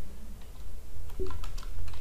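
Typing on a computer keyboard: a run of light keystrokes as a short phrase is typed.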